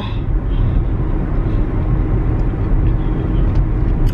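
Steady low rumble of car road and engine noise inside a moving car's cabin.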